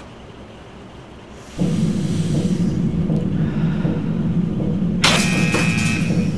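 Dark, low droning film score that cuts in suddenly after a quiet second and a half, joined about five seconds in by a loud, harsh high held tone.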